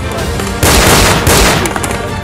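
Two dense bursts of rapid gunfire, the first starting about half a second in and the second just after a second, over background music with sustained tones.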